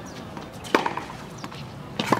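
Tennis rally: one sharp pop of a tennis ball struck by a racquet about three quarters of a second in.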